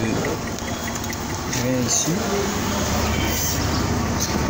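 Kia Sorento's turn-signal flasher ticking fast, over the steady background of the running car. The flasher is in hyperflash, blinking faster than normal, which is the sign of a fault in the indicator circuit.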